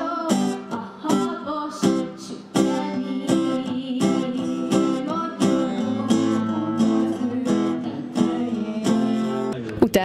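A woman singing to an acoustic guitar, strummed in a steady rhythm, with long held vocal notes.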